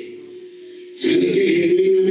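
A man preaching into a microphone through a PA: a brief pause, then about a second in his voice comes back loud, holding one long drawn-out pitch.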